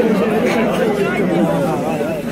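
Several people talking at once in a crowd: overlapping, indistinct chatter.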